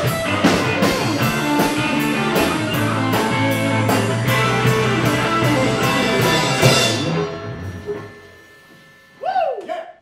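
Rock music with electric guitar and drum kit on a steady beat, fading out about seven seconds in. Near the end comes a brief sound effect whose pitch dips and rises again.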